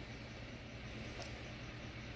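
Quiet room tone: a faint, steady low hum with a light hiss, and one faint tick a little past a second in.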